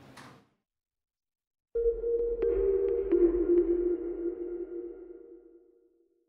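Electronic outro logo sting: a sustained synth tone that starts suddenly about two seconds in, drops to a lower pitch about a second later with a few light clicks over a low rumble, and fades away over the last couple of seconds.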